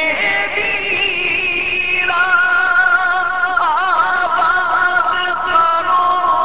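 Male voice singing an Urdu naat in long held, wavering notes, moving to a new phrase about two seconds in, with an ornamented turn near the middle.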